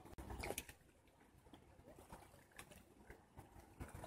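Near silence: faint outdoor background with a few soft, scattered clicks and a low rumble near the start.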